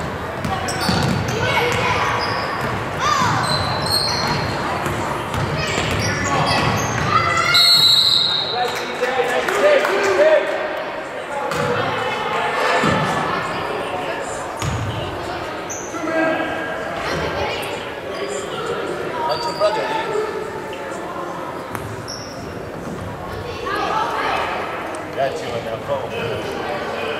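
A basketball bouncing on a hardwood gym floor, with knocks scattered through, under the voices of players, coaches and spectators in a large, echoing gym.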